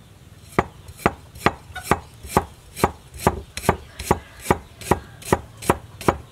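A cleaver slicing through a root of ginger and knocking on a wooden chopping block. The strokes come in a steady rhythm, a little over two a second, starting about half a second in.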